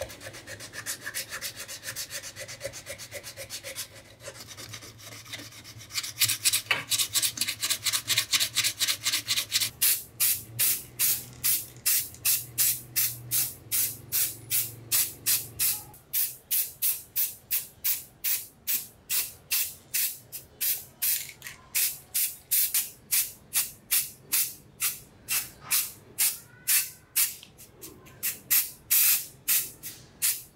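Sandpaper rubbed by hand over the band saw's cast aluminium housing, smoothing body filler. It goes as rapid back-and-forth strokes, scratchy and dense at first, then a steady run of about three strokes a second.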